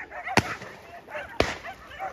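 Hunting dogs barking and yelping repeatedly on the trail of game, with two sharp cracks, one about half a second in and one about a second and a half in.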